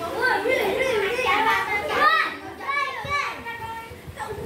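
Several children talking and calling out over one another, with high excited voices loudest about two seconds in.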